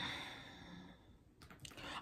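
A woman sighing: a breathy exhale that starts abruptly and fades over about a second.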